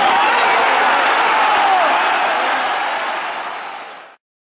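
Football stadium crowd: a loud wash of cheering, clapping and voices from the stands, fading out over the last second and a half.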